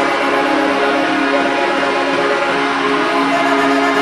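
Slow worship song with long held chords, and a woman's voice singing along with it.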